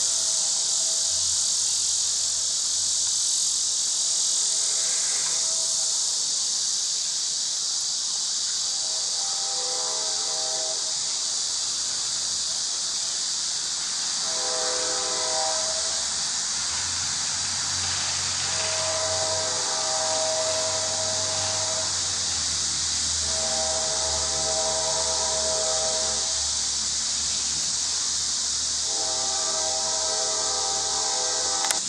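A steady, high-pitched insect chorus of the kind summer cicadas or crickets make. Five times, for a second or two each, a fainter held tone with several pitches stacked together sounds over it.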